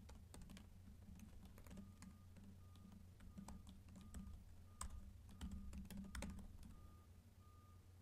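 Faint typing on a computer keyboard: scattered soft key clicks, over a low steady hum.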